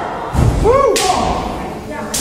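Close-quarters pro wrestling strikes: a heavy thud about a third of a second in, then a sharper smack about a second in, with a short shout in between.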